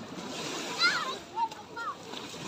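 Small waves washing on a sandy shore and water splashing as people play in the shallows, with children's high calls and shouts over it; the loudest call comes a little under a second in, with another short one about halfway.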